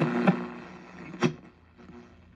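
Five-tube AM radio in a 1965 Coronado portable being tuned between stations: the broadcast voice drops out into fading hiss over a steady low hum, with one sharp crackle about a second in.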